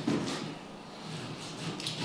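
Kitchen knife slicing raw meat on a wooden cutting board, with a few soft knocks of the blade against the board near the start and near the end.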